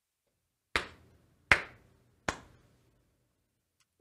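Three sharp percussive hits, evenly spaced about three-quarters of a second apart, each dying away quickly.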